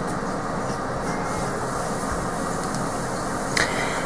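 A steady rumbling noise with no speech, and one short click near the end.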